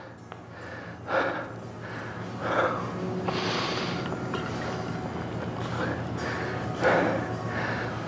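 A man breathing hard after a set of dumbbell curls, with several separate loud breaths and gasps as he recovers. About halfway through, a longer, brighter sound as he drinks from a water bottle.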